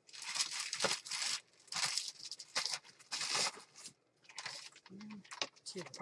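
Crinkling and rustling as craft supplies are rummaged through, in several bursts, the longest in the first second and a half. A short hum of voice comes near the end.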